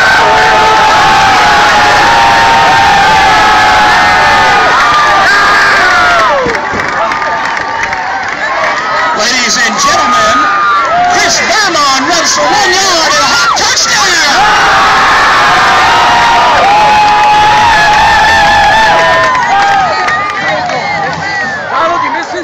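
Bleacher crowd at a high school football game cheering loudly for a touchdown, many voices shouting and screaming at once. The noise eases briefly about a third of the way in, then builds again.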